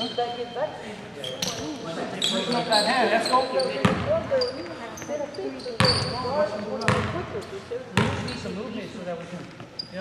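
Basketball bounced on a hardwood gym floor: several sharp thuds, the last few about a second apart, each ringing on in the hall's echo, with voices in the background.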